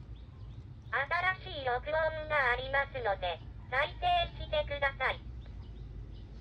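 Sharp fax-telephone speaking a recorded female voice prompt in Japanese through its built-in speaker, starting about a second in and lasting about four seconds, over a low steady hum.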